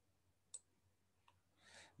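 Near silence: room tone with one faint click about half a second in and a fainter tick later, then a soft breath near the end.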